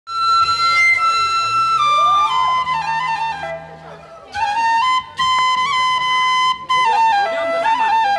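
Bamboo transverse flute playing a slow melody of held notes that step mostly downward in pitch, with a pause for breath about halfway through and short breaks between phrases.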